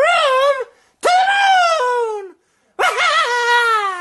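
A person's voice making three long, high-pitched cries with short gaps between them, each rising a little and then sliding down in pitch as it ends.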